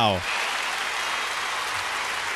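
Concert audience applauding: steady clapping and cheering from a large crowd, with no beat, at the end of a live performance.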